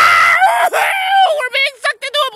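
A man screaming: a loud, high-pitched held scream that breaks off about half a second in, followed by shorter, broken-up voice sounds without clear words.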